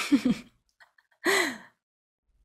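A woman's short, breathy, sighing vocal sound, then about a second later a brief breathy laugh.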